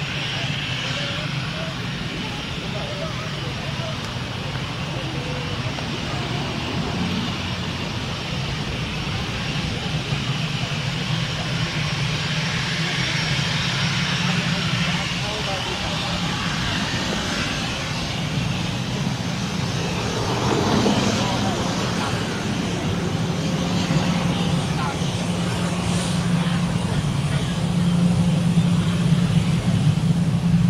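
Two rear-mounted turbofan engines of a Bombardier Global business jet running at taxi power: a steady low drone with a jet hiss. It grows louder over the last few seconds as the jet turns its engine exhausts toward the listener.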